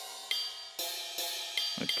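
Synthesizer notes from FL Studio's FLEX plugin, triggered from the piano keys of the Image-Line Remote app on a phone. A run of sustained, bright notes, a new one struck about every half second.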